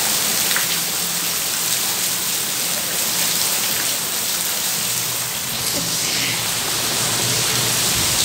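Heavy rain falling steadily on a wet concrete courtyard with standing water, a dense even hiss of drops on the surface.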